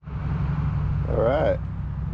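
Steady low rumble of road traffic, with a short wordless vocal sound from a person about a second in.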